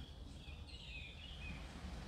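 Quiet background in a pause between speech: a low steady hum with a few faint, high, curving chirps in the first half.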